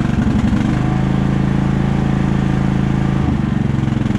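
Briggs & Stratton Intek engine of a Craftsman riding mower running just after starting, settling to a steady speed about a second in, with a small change in pitch near the end. It runs smoothly on its new head gasket.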